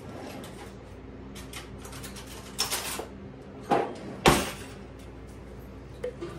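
Kitchen handling noises while a jar of mayonnaise is fetched: a few sharp knocks and thumps, the loudest about four seconds in, over a steady low hum.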